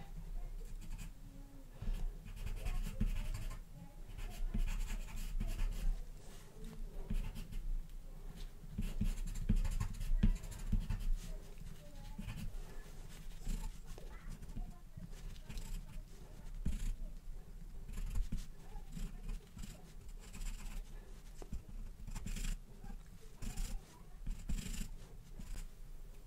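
Charcoal pencil scratching on toned paper in short, irregular hatching and shading strokes.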